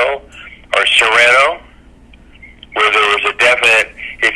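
A man talking, with a pause of about a second midway through.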